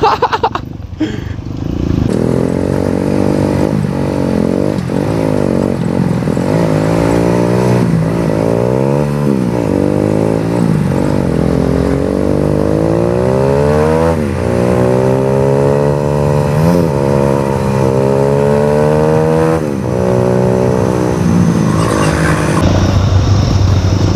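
Trail motorcycle engine running under way, its pitch rising and falling again and again as the throttle opens and closes, with several quick drops in revs, over a steady rush of road and wind noise.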